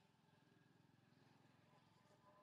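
Near silence, with only a faint low hum.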